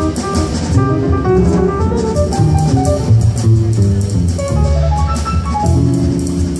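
Live jazz trio playing an instrumental passage: acoustic grand piano, plucked upright bass and drum kit with cymbals.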